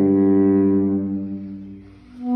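Saxophone quartet (soprano, alto, tenor and baritone saxophones) holding a sustained low chord that dies away over the last second.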